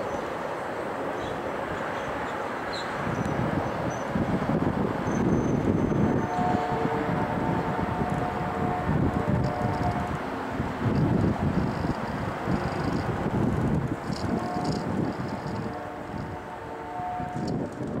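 A Canadian Pacific freight train rolling away into the distance with a steady rumble and wind on the microphone. The locomotive's multi-note horn sounds in several blasts, first about six seconds in and again near the end.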